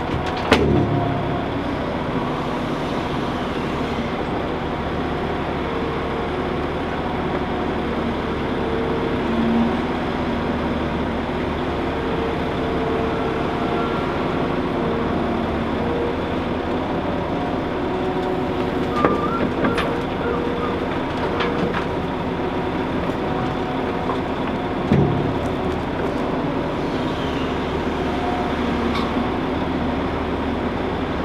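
Liebherr R950 SME crawler excavator working: its engine and hydraulics run steadily, with the engine note shifting as it swings and digs while loading soil and stones into a Volvo articulated dumper standing by with its engine running. A sharp knock comes just after the start, and another thump about 25 seconds in.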